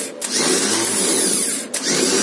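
Rebuilt Chevrolet starter motor spinning free under power on a bench test, with a steady motor whine. It drops out briefly twice and spins back up each time.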